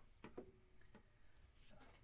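Near silence with a few faint clicks in the first second, from hard plastic graded-card slabs being handled and set down.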